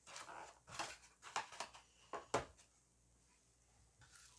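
A paintbrush lifted out of a plastic tray of Mod Podge on a wooden table: a quick run of light knocks, taps and scrapes, the loudest a little over two seconds in.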